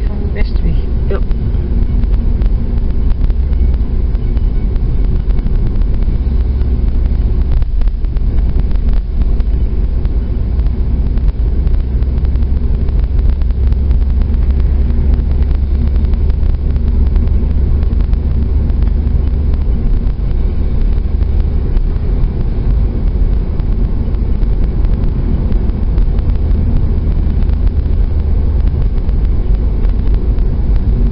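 A car's steady low engine and tyre rumble, heard from inside the cabin while driving at town speed.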